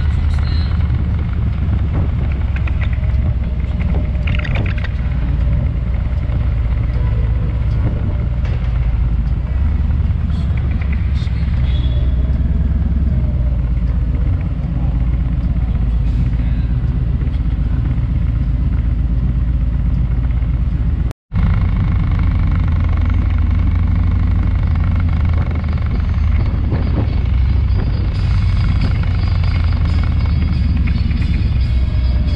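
Harley-Davidson Electra Glide's V-twin engine running at low speed in slow city traffic: a steady, loud low engine note with road noise over it. A sudden, very brief dropout to silence comes about two-thirds of the way through.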